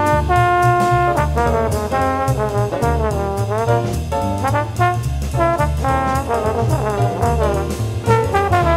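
Jazz trombone playing a melodic line of held and gliding notes over bass and drums, with regular cymbal strokes.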